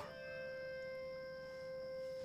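Quiet background score: one long held note on a flute-like wind instrument.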